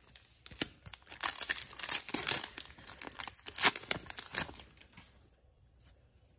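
A 2009-10 SP Authentic hockey card pack being torn open, its wrapper ripping and crinkling in a run of short sharp tears. The sounds stop about a second before the end.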